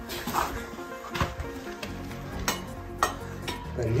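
Background music with a handful of sharp knocks and scrapes scattered through it, the sound of shoes and hands scuffing on granite while climbing through a narrow rock slot.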